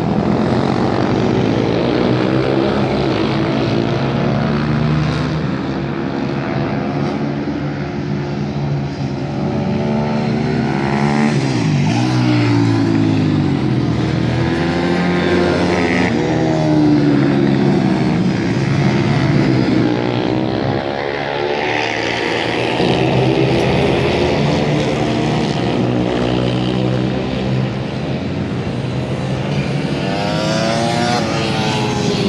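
Moriwaki 250 racing motorcycle engine lapping the circuit, its revs rising and falling again and again through gear changes and corners. The pitch drops sharply as it passes about a third of the way in.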